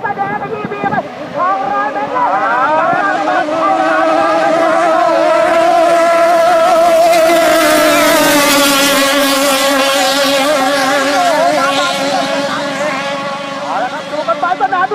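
Racing long-tail boat's engine running flat out as the boat speeds past. Its pitch climbs over the first few seconds, then holds high and steady. It is loudest about seven seconds in, then falls slightly as the boat goes by.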